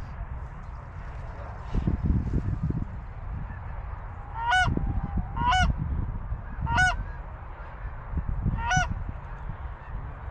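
Four loud two-note goose honks, each with a sharp break in pitch, spaced one to two seconds apart in the second half. Low wind rumble on the microphone underneath.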